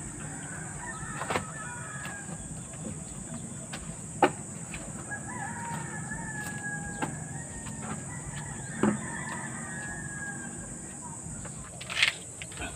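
A rooster crowing three times, long drawn-out calls, the middle one the clearest. Several sharp knocks come in between, the loudest about four seconds in.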